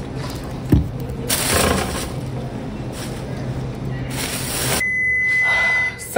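Store background hum with items rustling and a single thump at a self-checkout. Near the end the background drops away and one steady, high-pitched electronic beep holds for about a second.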